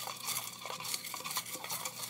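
Folded paper slips being stirred and rummaged by hand in a round metal tin: a run of small rustles and light clicks of paper and fingers scraping against the metal.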